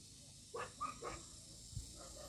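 A dog barking faintly: a few short barks in quick succession about half a second in.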